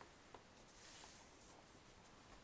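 Near silence: faint room hiss with a single small tick about a third of a second in.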